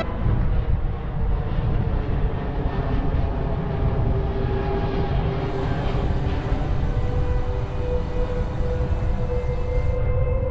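Wind buffeting the microphone of a moving bicycle-mounted 360 camera: a steady, uneven low rumble.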